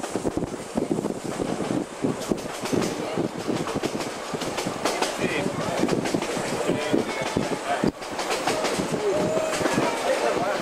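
Vintage railway carriage running along the track: the wheels clatter with rapid, irregular knocks over a steady rushing noise.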